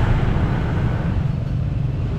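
Motor scooter ride in slow traffic: a steady low rumble of scooter engines and road noise.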